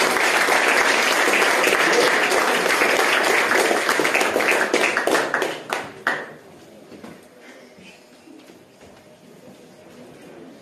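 Audience applauding, many hands clapping. The applause dies away about six seconds in, leaving a quiet room.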